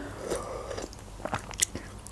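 Chicken soup sipped from a metal spoon, then soft chewing with a few faint mouth clicks.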